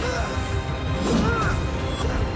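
Action-film fight soundtrack: crashing and punching sound effects over dramatic background music.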